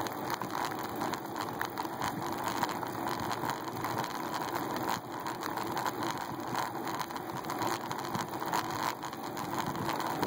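Bicycle rolling on asphalt, picked up by a phone clamped to the handlebars: steady tyre and road noise with frequent small knocks and rattles, such as an external battery dangling from the handlebars bumping.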